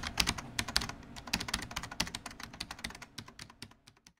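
Rapid keyboard typing clicks, a typing sound effect that accompanies on-screen text being typed out letter by letter. The keystrokes come quickly and unevenly, thin out towards the end, and stop just before it.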